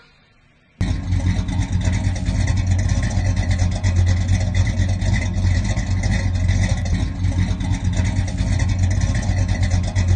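Loud car engine running steadily, cutting in abruptly about a second in after a brief hush.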